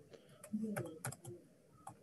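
Faint, scattered clicks of typing on a computer keyboard, with a faint low voice murmuring briefly about half a second in.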